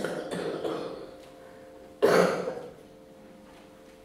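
A person coughing: a short cough right at the start, then a louder single cough about two seconds in.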